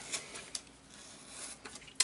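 Faint handling sounds of a pin being pressed by hand through an HO model railway turnout's ties: a short sharp click about half a second in, light rubbing, and a few small ticks near the end.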